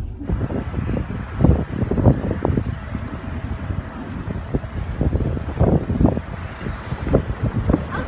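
Steady outdoor rushing noise with irregular low thumps and rumbles.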